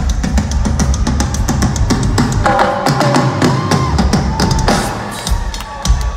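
Live rock drum duel: two drum kits played at once through a concert PA, with dense fast hits over heavy bass drum. About halfway through, the drumming thins and held pitched notes come in over it.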